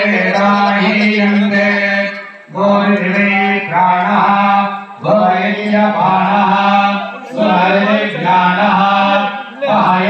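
Mantras chanted in a steady, nearly single-pitch recitation, in phrases of about two and a half seconds with short breath breaks between them.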